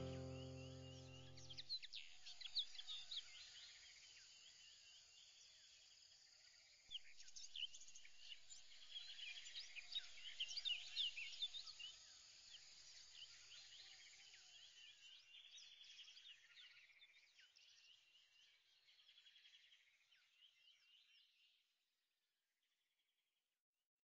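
Background music fades out in the first second or two, leaving faint birdsong: many short chirps overlapping, getting quieter and cutting off just before the end.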